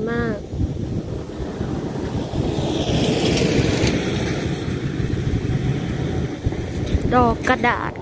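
Steady low rushing outdoor noise, swelling with a higher hiss for a couple of seconds about three seconds in.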